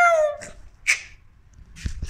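A man's drawn-out "ooh" exclamation sliding down in pitch in the first half second, then a short breathy hiss about a second in and a single knock near the end.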